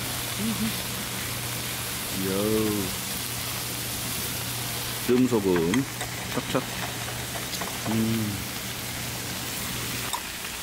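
Pork belly sizzling on a large iron griddle, a steady rain-like hiss over a low steady hum. Four times a person hums a short contented "mm" while eating, and a few small clicks come about six seconds in.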